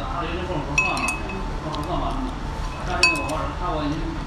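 Two light clinks of tableware, each with a short clear ring at the same pitch, about two seconds apart.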